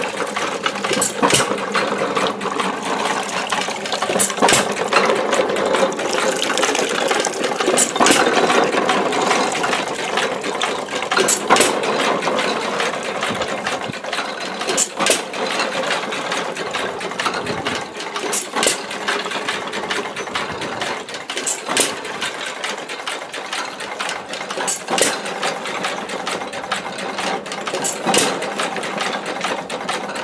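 1918 1¼ hp Baker Monitor pumping engine running and working a Beatty water pump, its gearing clattering steadily with a sharp bang about every three seconds. Water splashes from the pump spout into a metal pail.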